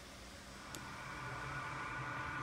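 Faint steady background hiss and hum of a store's ambience, slowly getting louder, with one faint click about three quarters of a second in.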